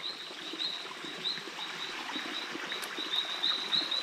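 A night insect chirping: a steady run of short, high-pitched pulses, several a second, with faint rustling underneath.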